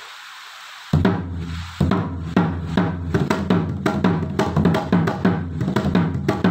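Balinese gamelan starting up about a second in: bronze-keyed gangsa metallophones struck with wooden mallets in fast, even strokes that ring, with a drum and a steady low ringing tone underneath.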